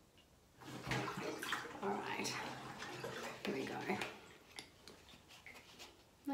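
Ear syringing: water squeezed from a rubber bulb syringe into the ear and splashing out into a plastic bowl held beneath, with some voice sounds mixed in. It starts about a second in and thins out to a few drips near the end.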